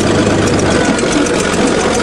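Bulldozer engine running loudly and steadily.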